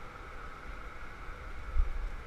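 Steady roar of a glassblowing hot shop's burners and fans, with a low rumble underneath and a single thump near the end.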